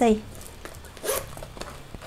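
Metal zipper on a small Nina Ricci crossbody handbag being pulled shut by hand, with a short rasp about a second in.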